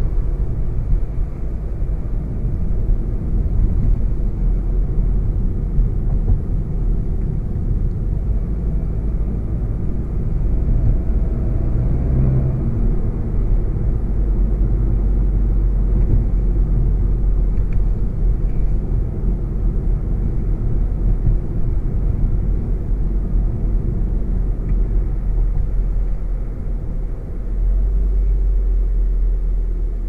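A 2016 VW Golf GTI Performance's 2.0-litre turbocharged four-cylinder engine and its tyres, heard from inside the cabin while driving at town and country-road speeds: a steady low rumble. The engine note rises briefly near the middle as the car picks up speed.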